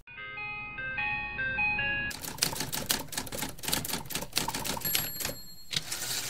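A short tinkling melody of single pitched notes plays for about two seconds, then a typewriter sound effect of rapid key clicks runs on, matching text being typed onto the screen.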